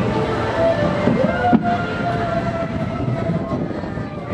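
Children's roller coaster train running along its track: a steady rumble and rattle of the cars, with a sharp knock about one and a half seconds in.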